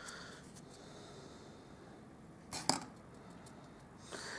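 A clear plastic spoon knocking against a plastic tub of embossing powder: a short double tap about two and a half seconds in, otherwise only faint room noise.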